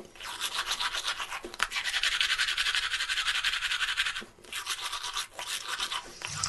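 Toothbrush scrubbing teeth in rapid back-and-forth strokes, with a short break a little past four seconds in.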